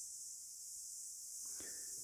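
Quiet pause holding only a faint, steady high-pitched hiss of background noise, with no distinct sound event.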